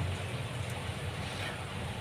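Steady low background hum with a faint even hiss: room tone, with no other event.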